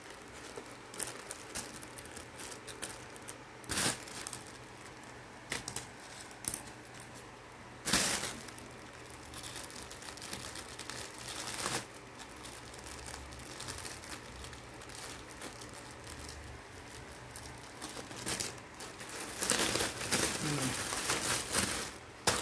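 Clear plastic packaging crinkling and rustling as it is handled and cut open with scissors. The rustling is irregular, with a few sharper, louder crackles and a busier stretch near the end.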